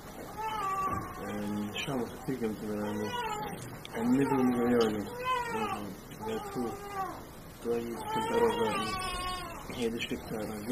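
Quiet voices talking away from the microphone, in drawn-out phrases whose pitch rises and falls.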